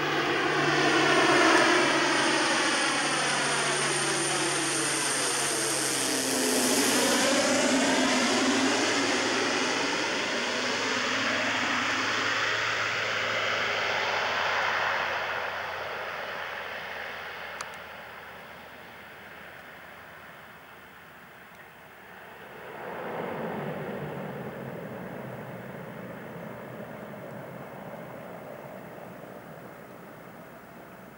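Cessna 208 Caravan single-engine turboprop passing close by at low height, its sound sweeping in pitch as it goes past, then fading away. About 23 seconds in it swells again as the aircraft runs along the runway.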